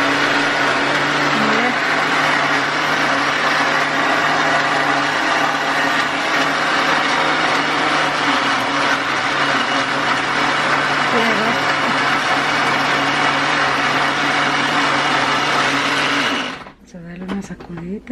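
Electric blender running at a steady speed, blending a shake, then switched off about sixteen and a half seconds in.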